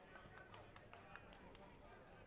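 Near silence with faint distant voices and a few short calls.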